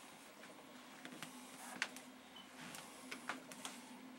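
Commodore C2N Datasette tape drive running as it records a program to cassette: a faint, steady hum with a few light clicks.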